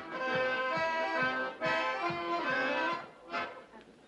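Accordion playing a Bavarian folk dance tune, with sharp hand slaps landing on the beat of a Schuhplattler dance; the music stops about three seconds in.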